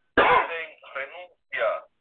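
A man clears his throat once, loudly, then says a few short syllables.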